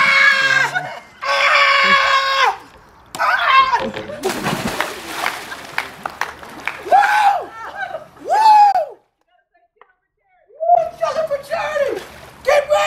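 A woman screaming in two long, high screams at the shock of ice-cold water, then a big splash about four seconds in as she jumps into a swimming pool, followed by short shouts from the water.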